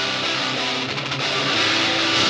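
Rock music in an instrumental passage: strummed electric guitar with little deep bass beneath it.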